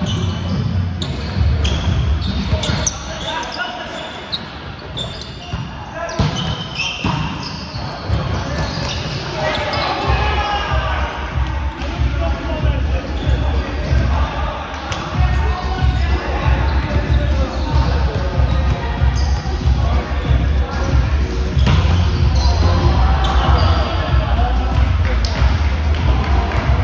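Volleyball being hit during a rally in a large, echoing gym, with sharp smacks of hands on the ball and players' voices calling out. From about ten seconds in, a steady low rumble joins and grows louder toward the end.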